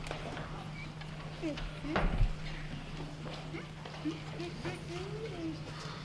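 Yamaha upright piano being rolled across a wooden stage floor, its casters and body knocking and clunking irregularly, with one louder thump about two seconds in. Faint voices murmur underneath.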